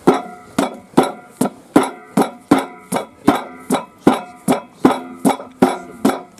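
Long-handled hammer striking the steel base plate of a weighted metal stand again and again, about two and a half blows a second. Each blow rings with a metallic tone.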